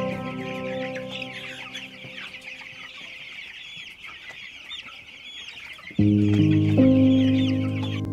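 A flock of young broiler chickens peeping, many short high calls overlapping continuously. Music fades out at the start and returns, louder than the peeping, about six seconds in.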